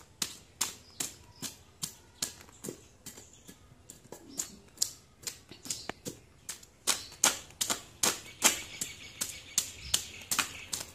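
A large knife scraping the scales off a whole fish, in quick repeated sharp strokes, about two to three a second, growing louder in the second half.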